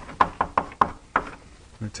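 Chalk clicking against a blackboard while writing: a quick run of about five sharp taps in the first second or so.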